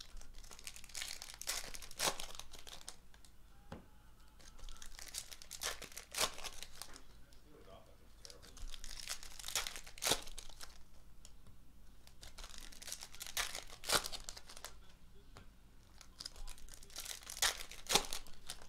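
Foil trading-card packs being torn open and crinkled by hand, one after another, in bursts of crackling about every four seconds.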